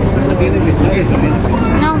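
People talking and chatting over a steady low rumble, with a high-pitched voice rising and falling near the end.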